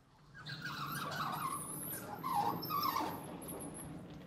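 Vertical sliding chalkboard panels being moved past each other: a long scraping rumble with wavering high-pitched squeaks from the sliding mechanism, starting about half a second in and running until just before the end.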